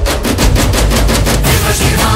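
Rapid, even drumming in a devotional song's backing music, about ten strokes a second, giving way near the end to sustained melodic instruments.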